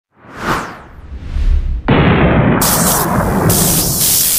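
Sound effects of an animated logo intro: a whoosh, a low rumble building up, then a sudden loud boom-like hit just before two seconds in, followed by loud hissing noise that surges and drops.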